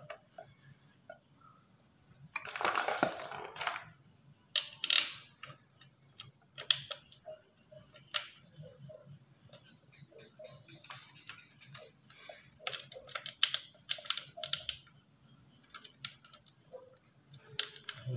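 Clicks, clinks and knocks of small metal and plastic parts being handled as a power sprayer's pump head is fitted back onto its engine. There is a rustling scrape about two and a half seconds in, a sharper knock about five seconds in, and a flurry of small clicks later on.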